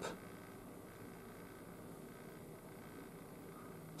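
Quiet room tone: a faint, steady hiss with a low hum and no distinct sounds.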